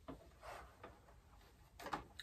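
A few faint ticks and taps of a tape measure being handled against a hollow plastic toy house while holes are measured.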